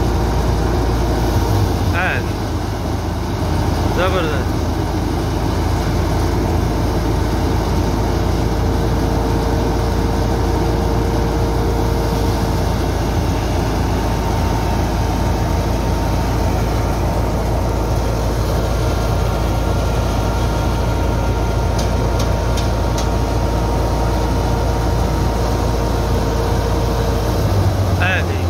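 Large tractor-driven wheat thresher running steadily under load as wheat straw is fed in, together with the MF 260 tractor's diesel engine driving it: a loud, continuous mechanical drone with a low hum and a steady whine.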